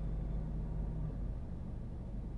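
Steady low rumble and hiss inside a car cabin, with a low steady hum that stops about halfway through.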